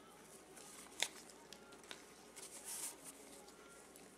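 Faint, scattered scratches and light clicks as a small nail-art cleanup brush works along the edge of a painted fingernail, with one sharper click about a second in.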